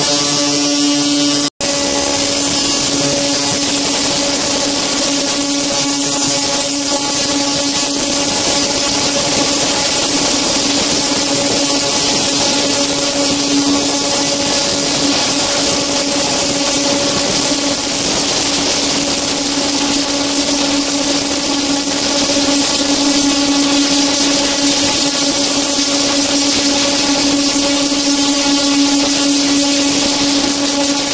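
Granbo ultrasonic cleaner running with glasses in its water-filled tank: a steady buzzing hum over a hiss. The sound breaks off for an instant about a second and a half in.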